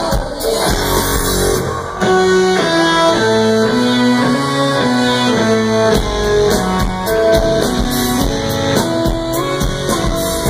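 Live band playing an amplified instrumental passage: a riff of distinct picked electric guitar notes over drums, stepping up in loudness about two seconds in, with the low end filling back in about six seconds in.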